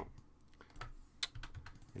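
About half a dozen light, irregular clicks and taps on a computer keyboard, the loudest a little past the middle.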